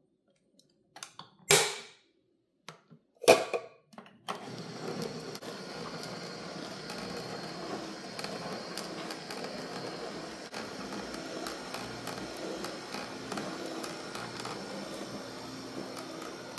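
Two sharp knocks, then about four seconds in a Nama vertical slow juicer starts and runs steadily: a low motor hum with a crackle of spinach leaves being crushed by the auger.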